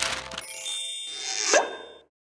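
Short musical logo sting: a plop, then a bright, chiming shimmer with a rising whoosh about one and a half seconds in, which is the loudest moment.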